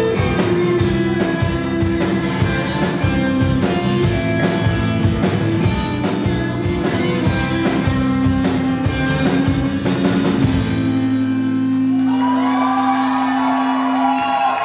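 Live rock band playing: drums, electric guitar and bass, with a woman singing. About ten seconds in the drums stop and a held chord rings on, with wavering pitched sounds over it, as the song comes to its end.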